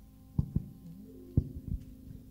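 Four dull low thumps in two pairs, the loudest about half a second and a second and a half in, typical of a handheld microphone being handled. Faint held keyboard notes sound underneath.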